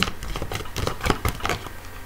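Tarot cards being shuffled and handled by hand: a quick run of light clicks and taps for about a second and a half, then quieter.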